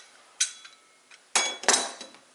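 Metal tools and bike parts clinking against a stone countertop: a light click, then two louder metallic clinks with a short ring about a second and a half in.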